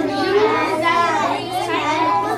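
Many children talking over one another in small groups: a steady babble of young voices with no single voice standing out.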